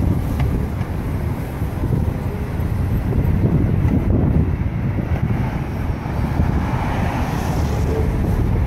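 City street traffic: cars and a city bus running through a downtown intersection as a steady rumble, with wind buffeting the microphone.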